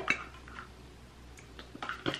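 Plastic clamshell packaging of a Scentsy wax bar clicking as it is handled and opened: one light click just after the start, then a few quick clicks near the end.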